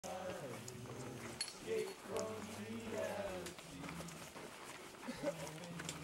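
Hikers' voices, indistinct and drawn out, with no clear words, and a few sharp clicks.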